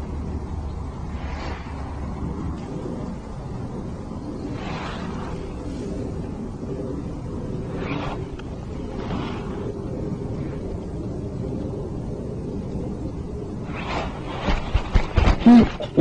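Steady low outdoor background noise on an open boat. A low hum fades out about two and a half seconds in, and near the end come a few sharp knocks and rustles as the fishing rod is jerked up to set the hook on a bite.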